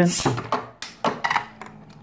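A Beyblade spinning top is launched into a thin plastic toy arena: a short sharp burst at the launch, then light clicks and knocks as the spinning tops skitter in the bowl and strike each other.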